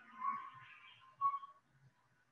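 Marker squeaking on a whiteboard while writing: two short, high squeaks about a second apart, the second the louder, over faint scratching of the tip.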